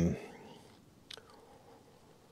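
The tail end of a man's spoken word, then a pause in speech with one faint, short click about a second in.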